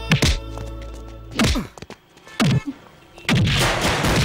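Film fight-scene punch sound effects: a series of heavy thuds and whacks, about one a second, each ending in a falling low boom. The busiest stretch is near the end.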